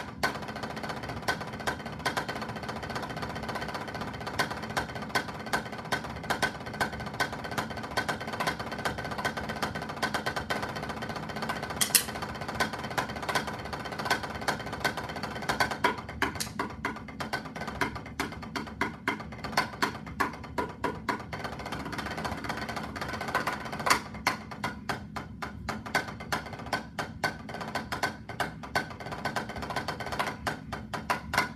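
Wooden drumsticks played on a practice pad: a fast, continuous run of strokes and rolls for roughly the first half, then more separated, accented strokes in quick patterns.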